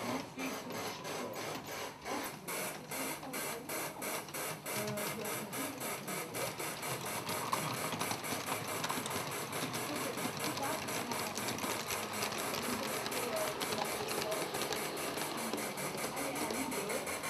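Large-scale model train running around the layout: its wheels click over the rail joints in a quick, regular rhythm, over a steady mechanical hiss.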